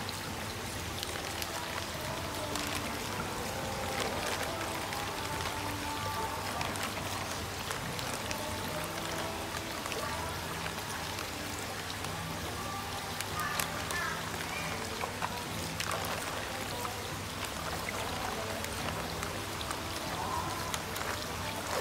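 Background music over the splashing and trickling of water as a large koi shifts inside a plastic bag floating in a tub. The water runs steadily, full of small drips and splashes.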